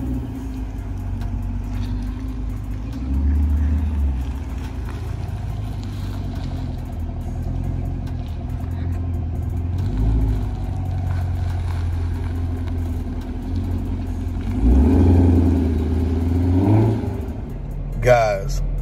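2019 Camaro ZL1's supercharged 6.2-litre V8 running at low speed as the car pulls away. The engine note swells briefly with the throttle about three seconds in and again about ten seconds in, then more strongly near the end with a rising pitch.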